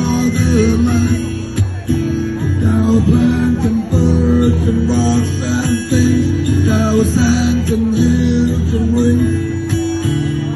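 Amplified acoustic guitar strummed in a steady rhythm, repeating the same chord pattern.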